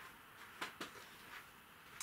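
Quiet room tone with a few faint clicks, from a mug of tea being handled, sipped from and lowered.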